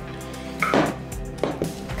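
Background music, with two dull knocks under it, about two-thirds of a second in and again near one and a half seconds: raw chicken pieces dropped into a ceramic bowl.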